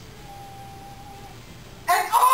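Quiet studio room with a low hum, then near the end a vocalist suddenly starts a loud sung line into the microphone.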